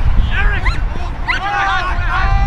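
Players' short, high-pitched shouted calls across the field, several in quick succession, over a low rumble.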